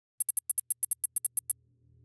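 Text-typing sound effect: about thirteen short, high-pitched electronic ticks in quick succession over a little more than a second, one per character as a title types onto the screen. A faint low hum rises underneath.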